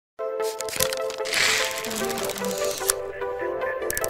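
Electronic intro jingle with sharp clicks and a whoosh about a second and a half in.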